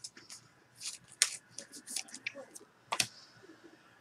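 Light, irregular clicks and taps, with two sharper clicks about a second in and about three seconds in.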